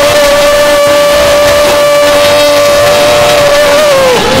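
A man's voice holding one long, high sung note on a vowel that barely wavers, then sliding down and breaking off near the end.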